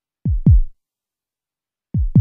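Deep electronic kick-drum beats in heartbeat-like pairs: two low thumps a quarter second apart shortly after the start, and the next pair just before the end, with silence between.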